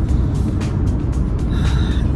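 Road noise inside a car's cabin at highway speed, a steady low rumble, with music playing over it.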